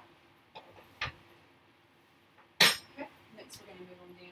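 A few sharp clinks and knocks of small hard objects being handled and set down, the loudest a bright clink a little past halfway.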